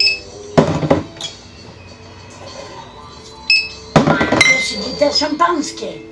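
People talking and laughing over background music, with two short, high-pitched rings, one at the start and one about three and a half seconds in.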